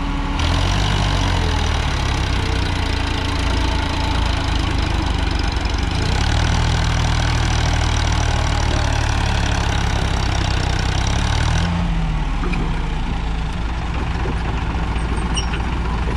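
Sonalika DI-35 tractor's three-cylinder diesel engine working hard while hauling a fully loaded sand trolley over soft, rutted ground. The engine note rises about half a second in, holds a heavy, steady pull, and eases off about twelve seconds in.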